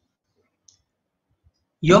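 Near silence with two faint, short clicks about a second apart, then a man's voice starts speaking near the end.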